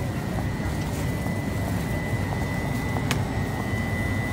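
Steady low rumble of store background noise picked up by a handheld phone being carried along a shop aisle, with a thin steady high whine throughout and a single sharp click about three seconds in.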